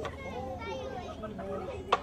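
Children's voices calling and chattering, high-pitched, with a sharp snap near the end.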